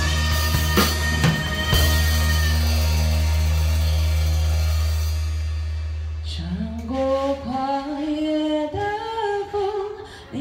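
Acoustic drum kit hitting accents with crash cymbals over a recorded song's held low chord, the cymbal wash fading out over about five seconds. About six and a half seconds in, a singing voice from the song comes in over quiet backing, with only a few light drum strokes.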